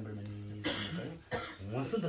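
A man speaking Tibetan in a slow teaching voice, holding a long vowel at first, with a short cough a little past a third of the way in.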